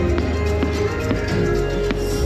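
Fireworks show music with held tones, and three or four sharp pops of fireworks bursting through it.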